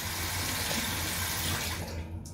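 Water running from a bathroom tap into the sink, a steady rush that stops abruptly at the very end.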